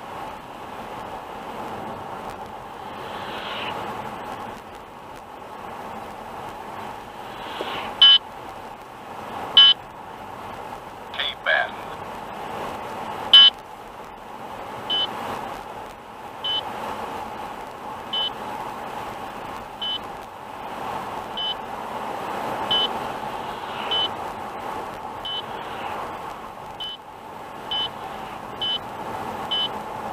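An in-car speed-camera warning device gives short, high, repeated beeps, starting about a quarter of the way in and coming closer together toward the end, alerting the driver to a mobile police speed-radar post ahead. Underneath is a steady hum of tyre and engine noise inside the car's cabin.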